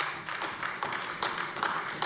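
Applause in the plenary chamber from a small group of deputies: many separate hand claps in quick, irregular succession that die away as the speaker resumes.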